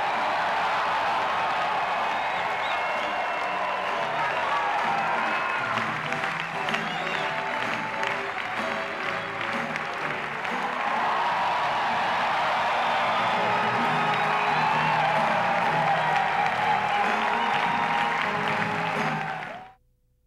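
Theatre audience applauding over show music during a curtain call, the music and clapping fading out just before the end.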